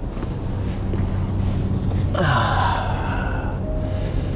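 Steady low road rumble inside a moving car's cabin, then, about two seconds in, a loud, drawn-out gasp from a person lasting over a second.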